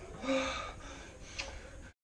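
A man's breathy, gasping vocal sounds, with a short voiced sound near the start and a click about a second and a half in; the sound cuts off suddenly just before the end.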